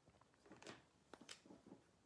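Near silence, with a few faint light taps and clicks from a clear rubber stamp on its acrylic block being handled on the craft table.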